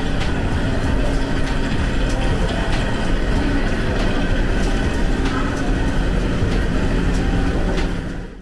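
Hot tub jets churning the water, a steady, loud rumbling rush with a few faint ticks scattered through it.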